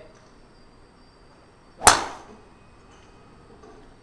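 Golf driver striking a teed ball once, about two seconds in: a single sharp crack with a short ringing tail.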